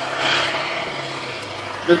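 Steady running noise from nearby military vehicles' engines, with a faint low hum.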